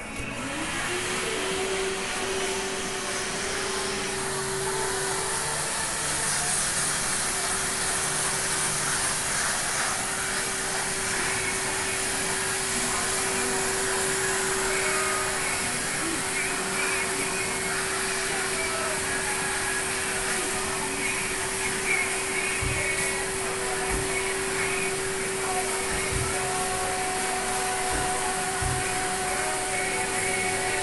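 Barbershop hair vacuum switched on: its motor spins up within the first second, then runs steadily with a rushing suction hiss as the brush nozzle on its hose sucks cut hair off the neck and cape. A few low bumps come in the second half.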